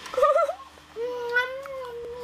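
A young child's voice: a short wavering squeal, then a long held, slightly rising hum-like note lasting about a second and a half.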